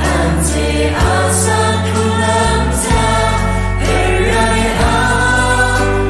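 Kachin Christian praise-and-worship song: singing over a full backing, with held chords, bass notes that change every second or so, and occasional cymbal washes.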